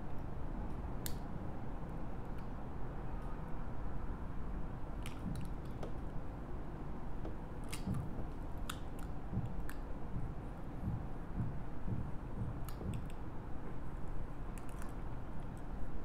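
Thick dried paint being cut and peeled off a mixing spoon with a small blade: scattered sharp clicks and crackles at irregular moments over a steady low room hum.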